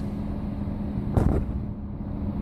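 Steady low background rumble with a constant low hum, and one brief louder sound a little over a second in.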